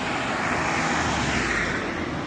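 A car driving past on the street: a steady rush of tyre and engine noise that swells as it goes by.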